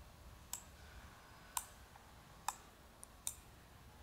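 Computer mouse button clicking: four sharp clicks roughly a second apart, with a fainter click just before the last, over a faint low hum.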